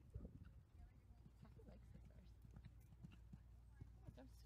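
Faint hoofbeats of a horse cantering on sand footing: a quick, irregular run of soft thuds.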